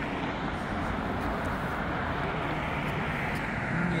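Jet airliner climbing after takeoff, heard as a steady, even rushing noise.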